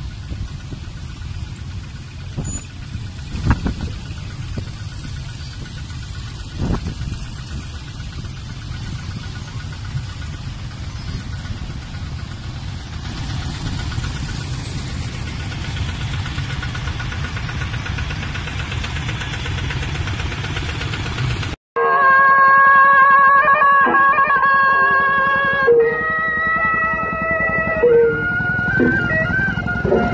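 Steady running noise of a large procession of motorcycles and cars on a road, with a few brief knocks. About 22 seconds in it cuts off abruptly and is replaced by music with long held notes.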